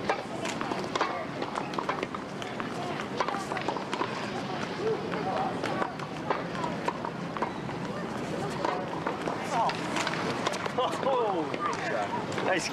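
Tennis balls being struck by rackets and bouncing on a hard court, sharp knocks every second or so, with footsteps on the court and indistinct voices underneath.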